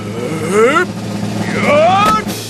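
A cartoon woodcutter's straining vocal effort, rising in pitch, twice, as he gathers his strength to swing an axe.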